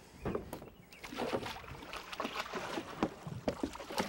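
Water splashing and sloshing in quick irregular bursts as a hooked muskie thrashes at the surface beside the boat, picking up about a second in.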